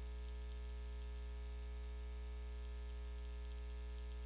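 Steady low electrical hum with a stack of overtones and a faint hiss, unchanging throughout.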